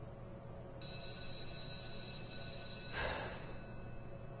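A high-pitched, steady ringing tone starts about a second in, holds for about two seconds and cuts off abruptly.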